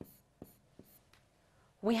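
Marker pen drawing on a board: a few short taps and strokes about every half second as arrows are drawn, then a woman's voice begins near the end.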